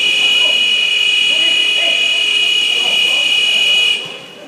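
Pool scoreboard buzzer sounding one long, loud, steady electronic tone for about four seconds, signalling the end of the period in a water polo match.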